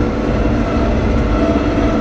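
Bizon BS combine harvester's diesel engine and machinery running, heard from inside the cab: a steady, loud low drone with a constant hum.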